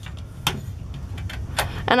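Handling noise from the wooden-framed clocks being picked over by hand: a low rumble with two sharp clicks, one about half a second in and one near the end.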